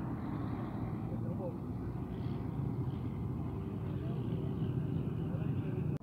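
Steady low rumble of a van's engine and road traffic at a roadside, with faint voices in the background.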